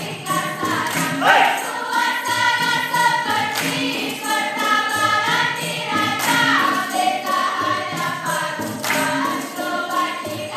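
Dikir barat chorus of many voices singing a chant in unison, holding long notes, over percussion with jingles keeping a steady beat.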